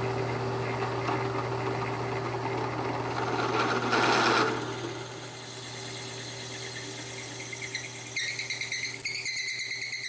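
Drill press running with a large twist bit boring a pilot hole into a square wooden pen cap blank: a steady motor hum under the noise of the bit cutting wood, loudest about four seconds in. About eight seconds in, a high squeal sets in.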